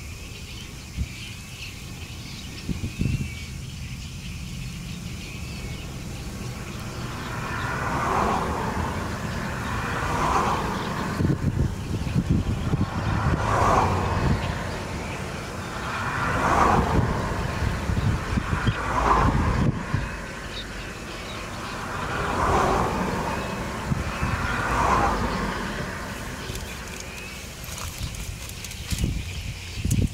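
Road traffic: a string of vehicles passing one after another, each swelling and fading over two or three seconds, about seven in all from a few seconds in until near the end, over a steady low rumble.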